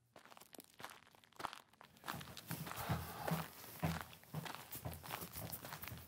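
Footsteps walking, faint, beginning about two seconds in at roughly two steps a second.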